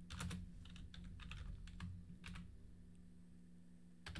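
Computer keyboard typing, faint: a short run of keystrokes over the first two seconds or so, then a pause with only a low steady hum.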